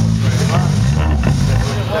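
Electric bass guitar through its amplifier sounding a few low, sustained notes that change pitch a couple of times, a borrowed left-handed bass being checked for tuning; the notes stop shortly before the end.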